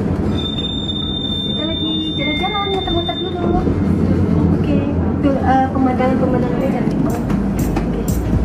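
Tram running, heard from inside the cabin: a steady low rumble with a high thin whine for the first three seconds or so, and a few sharp clicks near the end. A voice is heard over it at times.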